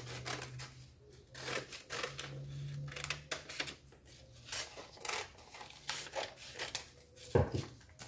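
Scissors cutting a paper sewing pattern: a run of irregular snips and paper rustles.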